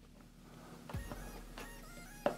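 X-Acto hobby knife blade trimming the end of a small styrene plastic tube flat: a light knock about a second in, then faint scraping with small clicks.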